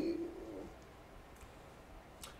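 A man's voice holding a drawn-out hesitation sound that trails off in the first half second, followed by quiet room tone.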